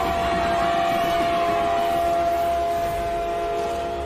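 A long, steady blast on a curved horn, fading near the end, over rumbling drumming from a large drum.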